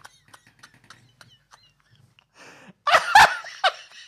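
Two men laughing helplessly: soft, breathless, wheezing laughter, then a loud sudden burst of laughter about three seconds in, trailing off into more short laughs.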